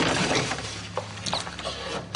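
A crash of something breaking: a spread of rattling noise with several sharp knocks, most of them between about one and one and a half seconds in.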